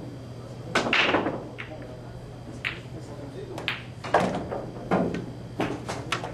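A pool shot: the cue strikes the cue ball and the balls clack together about a second in, followed by a series of sharp knocks of balls hitting the cushions and dropping into a pocket over the next few seconds, over a steady low hum.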